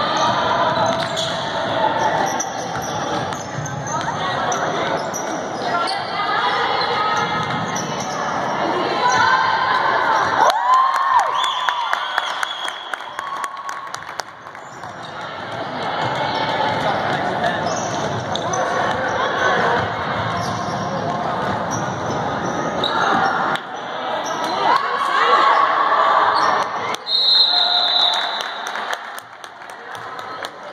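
Basketball being dribbled on a hardwood gym floor amid chatter from players and spectators, echoing in the gymnasium. Near the end a referee's whistle blows once, for about a second.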